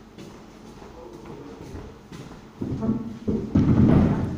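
Dull thumps and rubbing close to the microphone, starting after about two and a half seconds and loudest near the end, as someone moves right beside the camera. Before that there is only faint room noise.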